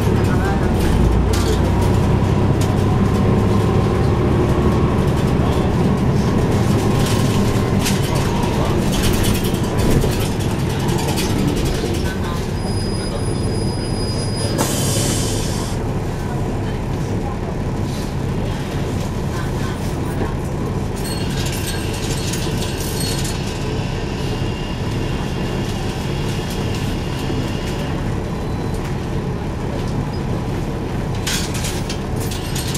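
Interior of a 2012 NABI 416.15 (40-SFW) transit bus heard from the rear seats: the engine and drivetrain run steadily with a low rumble, louder for the first dozen seconds and then somewhat quieter. About halfway through there is a thin high tone and then a short hiss.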